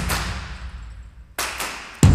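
Percussion strokes of Bharatanatyam dance music: one stroke at the start that rings and fades away over more than a second, then two quick strokes about a second and a half in, fading in turn.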